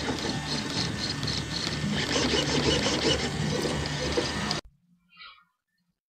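DLE-111 twin-cylinder two-stroke gas engine of a large RC plane idling on the ground with a rapid mechanical clatter. The sound cuts off abruptly about four and a half seconds in, leaving near silence.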